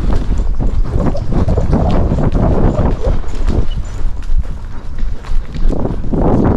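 Hoofbeats of a ridden horse on soft arena dirt, heard from the saddle as a run of irregular thuds. Wind buffets the microphone underneath.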